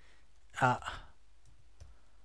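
A few faint computer keyboard keystrokes as words are typed, the clearest a soft click near the end.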